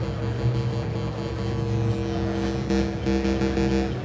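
Steady electronic organ tones from a transistor-style divide-down organ module, several pitches held together as a sustained note or chord without change.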